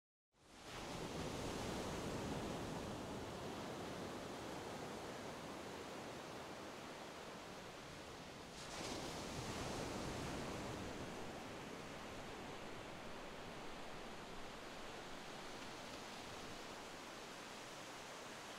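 A soft, steady rushing noise with no tone or rhythm. It fades in about half a second in and swells up again about halfway through.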